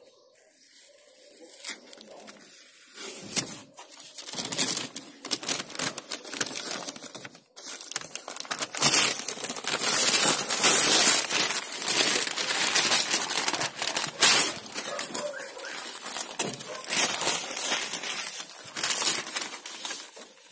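Newspaper masking paper and blue masking tape being pulled off a van's freshly painted panels by hand, crackling and tearing. Quiet at first, then continuous crumpling from about four seconds in, loudest around the middle.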